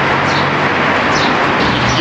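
Steady outdoor city street noise, a loud even hiss with a low hum under it, and a bird chirping a few times above it.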